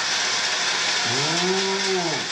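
Large crowd applauding and beating inflatable thunder sticks in a steady clatter. About halfway through, one voice calls out a long drawn-out note over it that rises, holds and falls.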